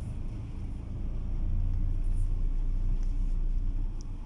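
Low, steady rumble of a moving car heard from inside the cabin, engine and road noise together. It grows louder about a second in and eases off near the end.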